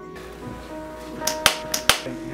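Background music of steady held tones, with a few sharp slaps in the second half. The slaps are hands slapping wet clay on a potter's wheel.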